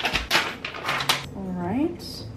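Rustling and clattering as food packages and dishes are handled on a kitchen counter, with a few sharp clicks in the first second. A woman gives a short rising hum near the end.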